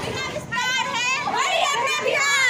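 Schoolgirls shouting slogans in short, high-pitched chanted phrases.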